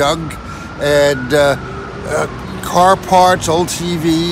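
A man's voice speaking, over a steady hum of street traffic.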